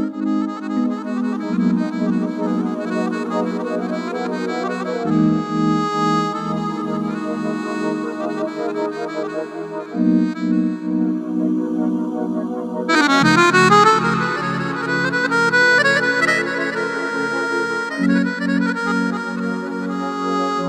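Electronic keyboard played with an accordion voice in a slow Bulgarian table song (bavno trapezno): held chords over a pulsing bass that changes note every few seconds. A fast rising run comes about two-thirds of the way through.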